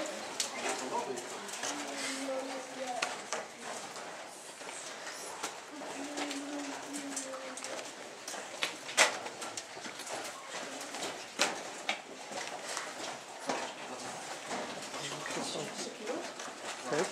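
Indistinct voices murmuring in the background, with scattered sharp clicks and knocks; the loudest click comes about nine seconds in.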